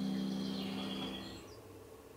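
A soft, steady synthesized tone from the Jibo robot's speaker, held on from under its speech and fading away over about a second and a half, leaving quiet.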